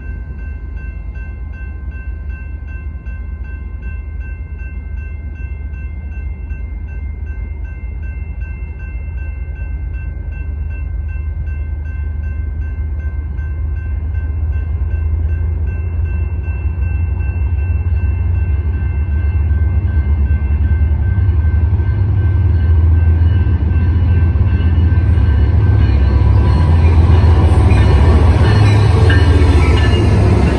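BNSF freight train's diesel locomotives approaching, their low engine rumble growing steadily louder, with a steady high-pitched tone through the first half that fades away. Near the end the lead locomotives pass close by with rising wheel and rail noise.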